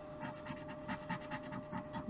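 A wooden stick scratching the latex coating off a lottery scratch-off ticket in a quick run of short, rapid scraping strokes.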